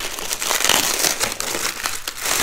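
Clear plastic wrapping crinkling steadily as it is pulled off a round LED spotlight by hand.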